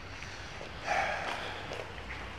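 Quiet room tone broken about a second in by a short, hesitant 'eh' from a man's voice.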